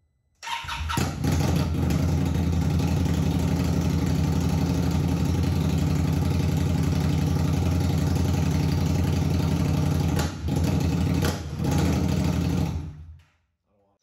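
Indian Scout Bobber's 69-cubic-inch V-twin, fitted with JP Cycles shorty exhaust pipes, starting up, idling steadily, and shut off about a second before the end.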